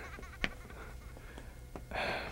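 Faint wavering laughter from a man, trailing off, with a single sharp click about half a second in.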